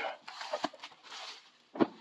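Plastic bubble wrap rustling and crinkling as it is pulled off a cardboard toy box, uneven and coming and going over about the first second and a half, with a faint knock partway through.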